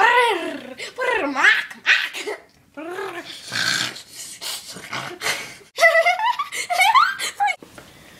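Wordless vocal noises from a young girl: high squeals that slide down and back up in pitch, over and over, with a harsh rasping noise about three and a half seconds in.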